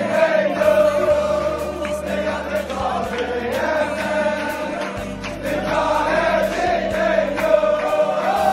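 A large group of men singing a song together, accompanied by an acoustic guitar.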